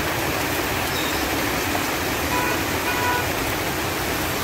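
Heavy rain pouring steadily on a flooded street, with vehicles driving through the standing water. Two faint short tones sound a little past the middle.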